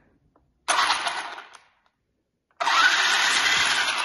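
Traxxas Rustler RC truck's newly fitted brushless motor spinning the drivetrain and wheels with no load, in two throttle bursts: a short one about a second in that winds back down, then a longer, steady one from about two and a half seconds in.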